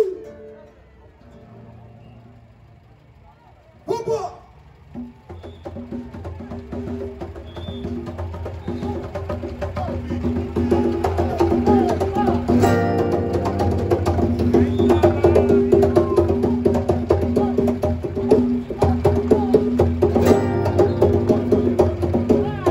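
Samba school percussion band (bateria) starting up. It builds from near-quiet into a steady, loud samba beat with deep drums under rapid high percussion strokes. A sudden short sound comes about four seconds in, before the music swells.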